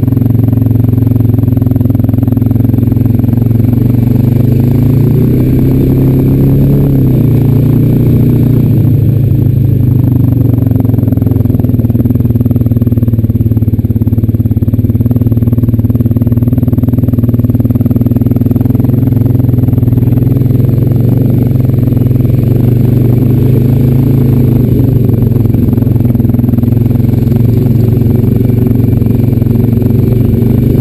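Honda Rancher 420 ATV's single-cylinder four-stroke engine running while riding, its pitch rising and falling as the throttle is worked.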